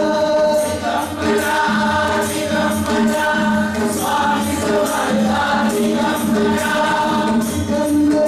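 Congregation singing a Hindu arati hymn together, with hand claps and jingling percussion keeping a steady beat.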